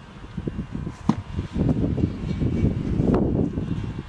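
Wind buffeting the microphone: an uneven low rumble that swells from about one and a half to three seconds in, with a sharp click about a second in.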